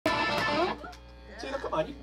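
Electric guitar sounding loudly through the amp, cut off after under a second, followed by a man talking on stage.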